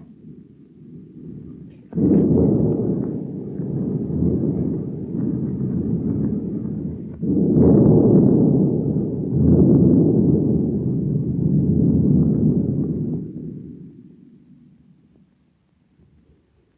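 A loud, low rumbling noise that starts suddenly about two seconds in, swells again twice, and fades away over the last few seconds.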